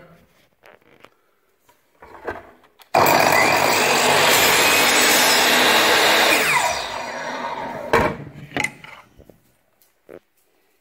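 Sliding miter saw switched on about three seconds in and cutting through a very small piece of wood held down with a stick. The motor is released and spins down with a falling whine, and a sharp knock and a few lighter knocks follow near the end.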